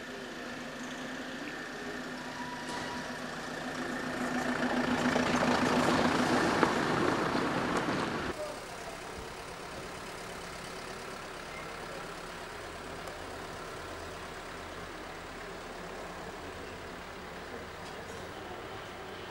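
Motor vehicle engine running close by, swelling louder for a few seconds and then cut off abruptly about eight seconds in; after that a steady, quieter background hum.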